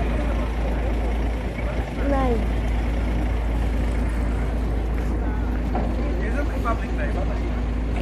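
Street traffic noise with a double-decker tour bus running close by, over a steady low rumble, with scattered voices in the background.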